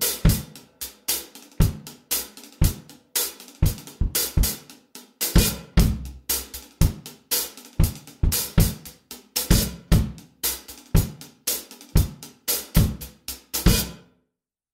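Pearl acoustic drum kit played with sticks in a steady groove: kick drum, snare and hi-hat with cymbal crashes, close-miked with overheads.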